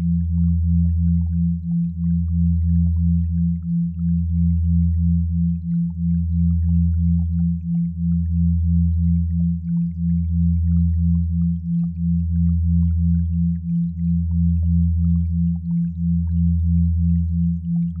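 Synthesized binaural-beat sine tones: a low steady hum that dips briefly about every two seconds, under a higher tone that pulses about two and a half times a second.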